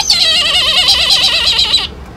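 A young kite calling: one long, loud, quavering scream whose pitch wavers rapidly up and down, breaking off shortly before the end.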